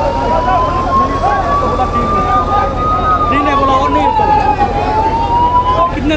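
Emergency vehicle siren wailing in a slow rise and fall: it climbs for about three seconds, drops for nearly two, then climbs again. Many people talk at once underneath it.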